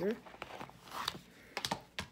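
Light plastic clicks and a soft rustle as small lip-product tubes are picked up and handled, with a quick cluster of clicks near the end.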